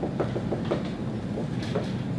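Dry-erase marker writing on a whiteboard: a quick run of short strokes, with brief squeaks near the end.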